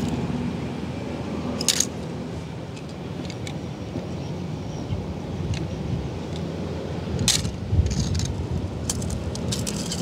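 Die-cast metal toy cars being handled, giving a few sharp clicks and clinks, with several close together near the end, over a steady low background noise.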